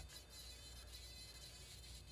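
Faint, steady high-pitched whine of a Dremel rotary tool running a small carving bit against the wood.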